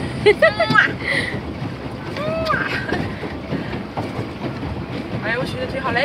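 Steady rush of wind on the microphone aboard a moving pedal boat, with women's voices in short phrases near the start, briefly in the middle and again near the end.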